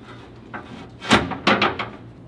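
Metal catalytic converter shield plate scraping and knocking against the truck's skid plate as it is pushed up onto the bolts: two loud rubs about a second in and half a second apart.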